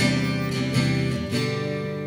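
Acoustic guitar strummed with no voice: a few chord strokes ringing out and slowly fading.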